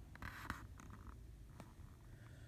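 Faint rustle of a picture book's paper page being turned: a short brush of paper with a small tick in it, then another faint tick about a second later.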